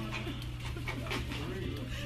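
Faint voices and short breathy sounds over a steady low hum in a small room.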